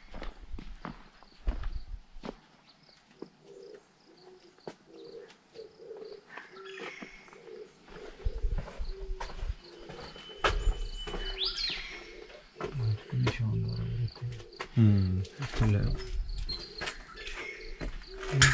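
Birds chirping and calling in mountain forest, with a clear high whistle that sweeps upward about eleven seconds in. Quiet voices talk in the second half, and there are a few faint knocks.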